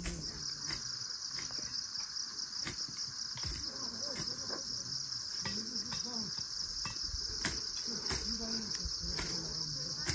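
Insects calling in a steady, high-pitched chorus, with faint distant voices beneath it.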